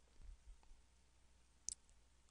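Near silence with a few faint clicks and light taps of a stylus on a pen tablet as a word is handwritten. One sharp click comes near the end.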